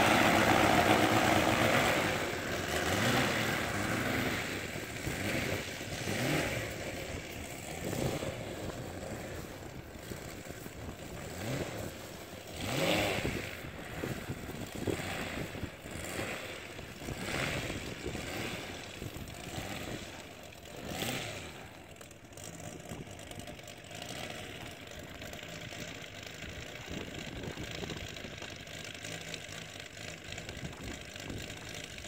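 Seidel 250-7 B radial engine of a large RC biplane running on the ground, its revs rising and falling in repeated throttle bursts every few seconds. It is loudest in the first two seconds, then quieter and more distant.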